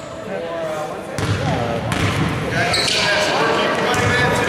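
Background chatter of players and onlookers in a gym, with a few thuds of a basketball bouncing on the hardwood court.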